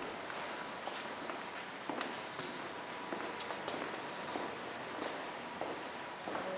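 Footsteps of several people walking across a hard floor: faint, irregular steps over a steady background hiss.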